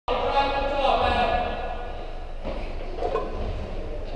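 Indistinct voices echoing in a large gym hall, loudest in the first second and a half, then quieter.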